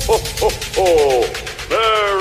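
Vocal calls at the start of a Christmas Zumba dance remix track: a few short pitched shouts, then a longer call sliding down in pitch, then a long call that rises and holds near the end.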